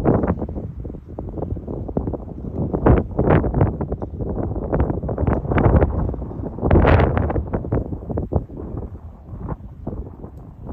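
Wind buffeting the microphone in uneven gusts, strongest about three and seven seconds in.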